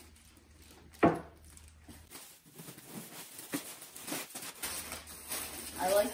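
Brown honeycomb paper packing rustling and crinkling as items are handled in a cardboard box, with one sharp knock about a second in and a few small clicks later.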